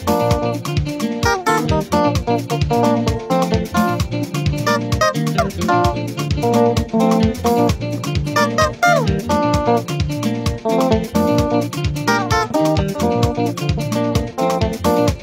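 Electric guitar, a Fender Strat-style, playing a lively praise instrumental melody of quick single notes with string bends. It plays over a bass line and a steady beat.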